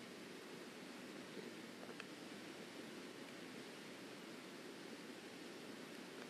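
Steady low hiss of background noise on a mid-1990s VHS camcorder recording, with a faint click about two seconds in.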